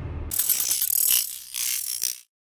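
Ratchet-wrench sound effect: a rapid run of fine clicks lasting about a second, then a second short burst about a second and a half in that cuts off at the end.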